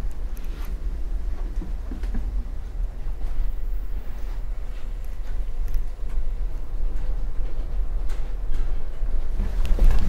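Steady low rumble of a moving Amtrak passenger train heard from inside the car, with a few scattered knocks and clicks.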